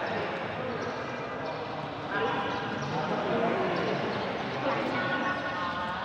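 Voices of onlookers calling out and chattering during a pencak silat bout, echoing in a large hall, with dull thuds from the fighters on the foam mat.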